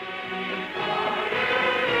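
Orchestral music from an old radio recording: sustained chords that swell in and grow steadily louder.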